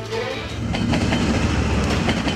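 Passenger train running past: a steady rumble of wheels on the rails with a few sharp clacks about a second in.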